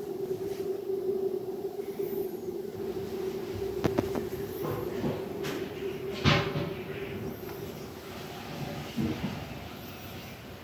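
A steady low mechanical hum, like a small motor or household appliance running, that fades after about seven seconds. A few light knocks and clicks sound over it, the clearest about six seconds in.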